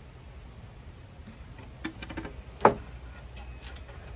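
A few light clicks and then one short, sharp knock about two and a half seconds in, over a low steady outdoor rumble.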